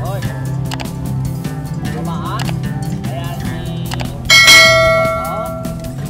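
Background music with a steady beat. About four seconds in, a loud bell-like chime rings out and fades over about a second and a half: the notification-bell sound effect of a subscribe-button animation.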